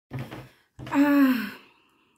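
A woman's breathy, voiced sigh lasting under a second, its pitch falling slightly, after a brief low sound at the start.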